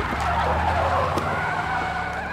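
Cartoon sound effect of a van's tires screeching as it speeds away, over a low, steady engine drone, starting with a short sharp hit.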